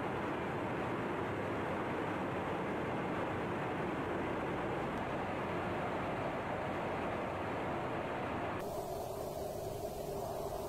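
Steady rushing roar of jet aircraft in flight, engine and wind noise. About nine seconds in it changes abruptly to a duller, lower rumble.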